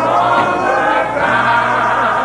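Gospel choir singing, with the held notes and wavering pitch of several voices together, heard on an old tape recording.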